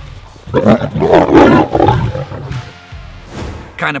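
Lions fighting: a loud burst of snarling and growling beginning about half a second in and lasting about two seconds, then dying down.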